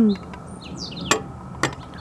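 Small birds chirping faintly in the background, with two sharp clicks about half a second apart near the middle.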